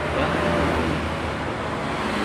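Honda Scoopy scooter's single-cylinder four-stroke engine idling steadily, being warmed up.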